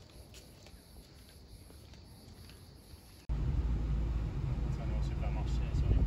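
Faint outdoor ambience for about three seconds, then a sudden cut to the steady low rumble of a car driving, heard from inside the cabin.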